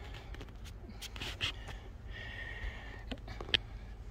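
Handling noise as a camera phone is taken off its tripod and carried by hand: scattered light clicks and rubbing, with one sharper click about three and a half seconds in.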